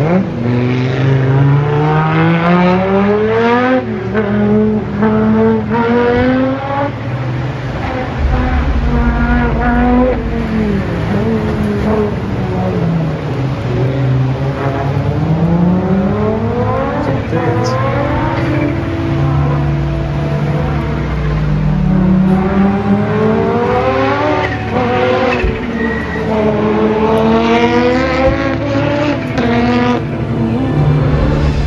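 Audi Sport quattro S1 rally car's turbocharged five-cylinder engine at full throttle, its revs climbing hard through the gears, then dropping off and climbing again several times.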